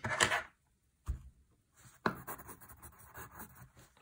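Staedtler Norica HB graphite pencil writing on paper, a run of short scratchy strokes starting about two seconds in, after a soft knock about a second in.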